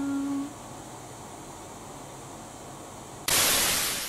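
A held vocal note ends about half a second in, leaving the low steady hiss of an electric desk fan; about three seconds in, a loud rushing whoosh sound effect cuts in suddenly.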